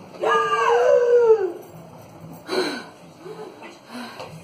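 A woman crying out in a long, wavering wail that rises and falls for over a second, then a short sob about two and a half seconds in and a fainter whimper after it.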